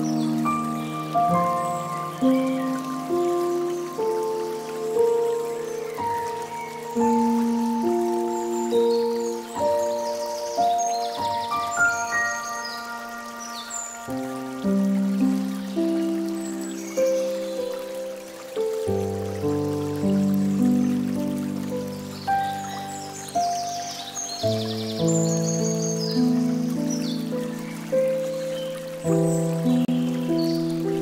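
Slow, calm instrumental music of softly struck notes that ring and fade, over a faint trickle of water from a bamboo fountain spout.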